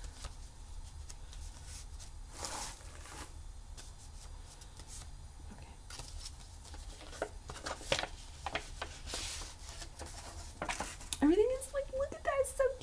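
A kraft-paper envelope being opened carefully by hand, with paper rustling and sliding: a longer rustle a couple of seconds in and a cluster of small clicks and taps around the middle.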